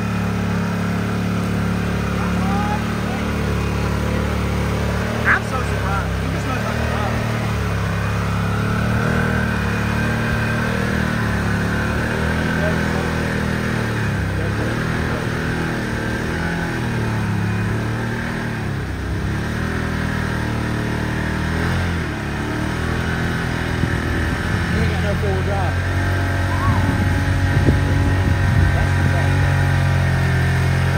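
Side-by-side UTV engine pulling the machine through a deep mud hole, its pitch rising and falling as the throttle is worked, with more throttle and a louder, rougher sound near the end as it climbs out.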